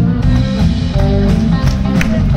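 Live rock band playing a song's instrumental opening, with drum kit, electric guitars and keyboards, loud through a concert PA.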